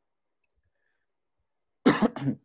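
Near silence, then a single short cough near the end.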